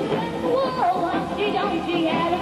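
A girl singing live into a microphone over music, with the pitch of her voice sliding up and down.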